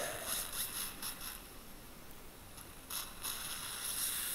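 Faint, high-pitched whirring hiss of dental surgical equipment at work in the mouth, with short brighter scraping patches near the start and about three seconds in.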